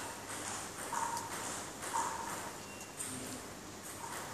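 Footsteps of court shoes on a hard indoor floor, with a couple of short squeaks about one second and two seconds in.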